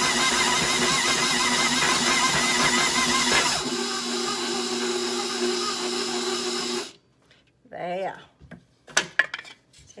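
An old, much-used KitchenAid stand mixer running, its flat beater working stiff sugar-cookie dough in the bowl. About three and a half seconds in the motor noise drops to a quieter, steadier hum, and it cuts off suddenly about seven seconds in, followed by a few sharp clicks.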